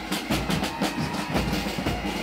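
Pipe and drums band playing on the march: drums beating a steady rhythm under the bagpipes.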